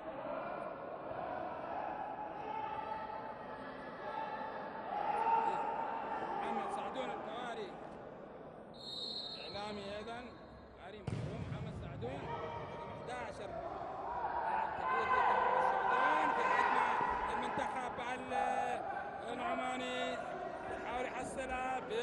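Futsal in play on an indoor court: the ball is kicked and bounces on the hard floor, and players and spectators call out in an echoing sports hall.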